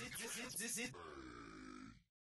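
A voice makes a quick run of short grunting syllables, about six in the first second, then a lower drawn-out sound that fades and cuts off.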